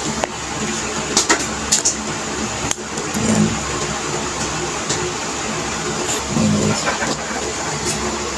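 Small sharp plastic clicks and taps from handling the opened switch housing of a clip fan, over a steady background hiss.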